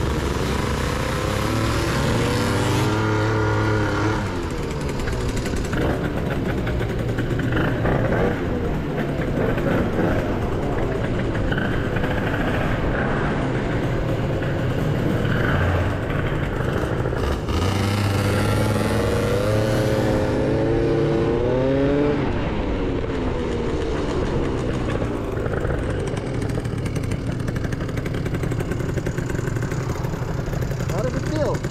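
Two-stroke scooter engines being ridden, revving up in rising pitch as they pull away, about a second in and again around eighteen seconds in. The rider finds the Gilera Runner 180 a little boggy, as if running rich and not yet cleaned out.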